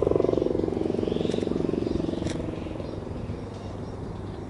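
Stunt kite's sail fluttering in a fast buzzing drone as it sweeps low overhead, loudest at first and fading as the kite moves away.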